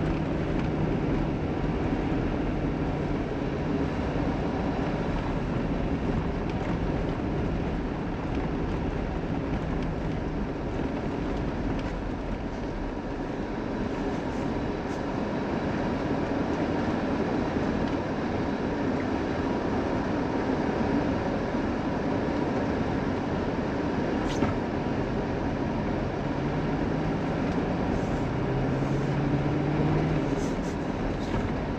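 Mitsubishi Pajero Sport driving on a snow-covered road, heard from inside the cabin: a steady mix of engine and tyre noise, with the engine note rising near the end. One sharp click comes about 24 seconds in.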